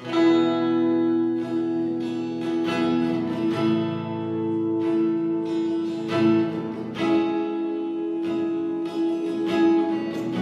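Acoustic guitar strummed in a steady rhythm, starting suddenly from silence as the introduction of a worship song, with the chord ringing on between strums.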